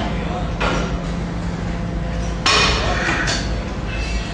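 Metal clanks from a cable machine's weight stack and bar as the load is raised and lowered. The loudest clank, with a short metallic ring, comes about two and a half seconds in, over a steady low background.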